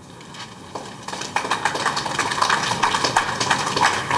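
An audience clapping. The applause starts under a second in and grows fuller about a second and a half in.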